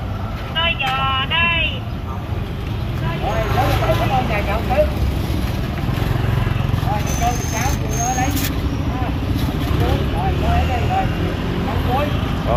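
Steady low rumble of motorbike street traffic, with several people talking over it.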